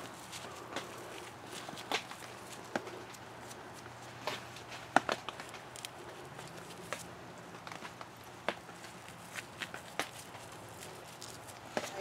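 Faint, irregular light knocks and rustles of gloved hands breaking up morel spawn and scattering it over loose potting soil, with a faint low hum underneath.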